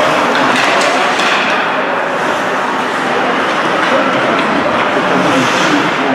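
Ice hockey rink game sound: a steady wash of skates on ice and spectator chatter, with a few short sharp clacks of sticks and puck.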